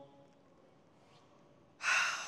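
Quiet room tone, then near the end one sharp, audible breath close to the microphone, lasting about half a second.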